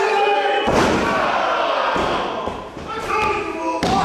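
A wrestler's body lands on the wrestling ring's canvas after a dive from the top rope: a loud thud about half a second in that rings on in the hall. A smaller thud follows about two seconds in, and near the end comes a sharp slap on the mat as the referee starts the pin count.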